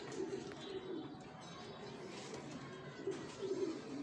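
Domestic pigeons cooing: low warbling coos in two bouts, one just after the start and another about three seconds in.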